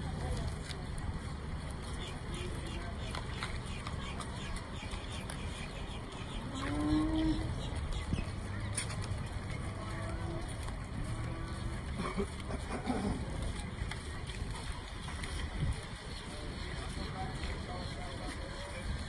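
Cattle lowing, with one longer moo that rises a little in pitch about seven seconds in and a few shorter calls later, over the chatter of onlookers.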